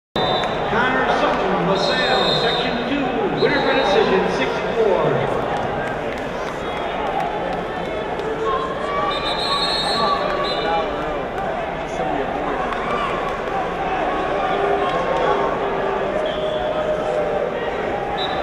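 Crowd of spectators talking and shouting at once in a large indoor arena, many voices overlapping with no single clear speaker.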